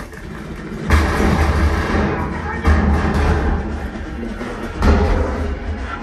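Film soundtrack music played through a home theater speaker system with a 12-inch subwoofer. Deep bass hits come in suddenly about a second in and again near three and five seconds, over a dense layer of score.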